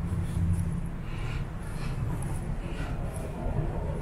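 Footsteps on a pavement, about one step every three-quarters of a second, over a steady low rumble.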